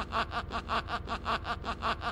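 A man's rapid, breathy snickering laugh, about six or seven short pulses a second.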